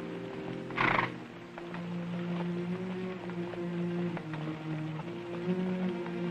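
Orchestral film score holding sustained low notes that move in steps, over faint clopping of horses' hooves on a dirt street. A horse gives one short, loud snort about a second in.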